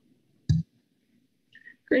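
Near silence on a meeting's audio feed, broken by a single short click about half a second in.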